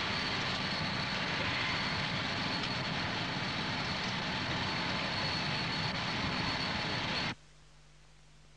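Steady aircraft engine noise on an airfield with a high, even whine, cutting off suddenly near the end.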